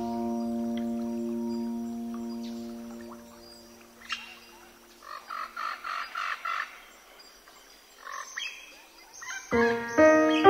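Relaxing piano music: a held chord dies away over the first few seconds. In the quiet that follows, a bird chirps in a quick run of short calls, and a new piano chord is struck near the end.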